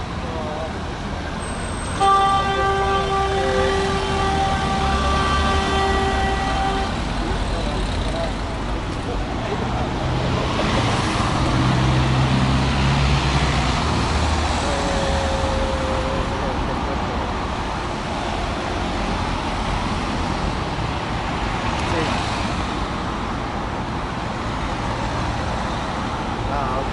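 Busy street traffic with cars passing close by. About two seconds in, a vehicle horn sounds one long steady blast lasting about five seconds.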